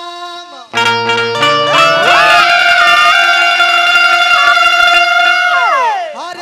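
Live Bhojpuri folk song through a stage PA: instrumental accompaniment comes in loudly with a quick rising run of notes about a second in, and a male singer then holds one long high note that slides down near the end.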